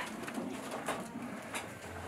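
Hand milking into a metal pail: regular short hissing squirts of milk, about one every two-thirds of a second. A low wavering sound runs underneath.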